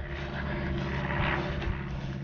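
An engine running steadily in the background, a low even drone that holds one pitch throughout.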